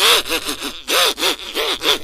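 Donald Duck's raspy quacking voice sputtering a wordless protest, a fast string of short squawks at about five a second.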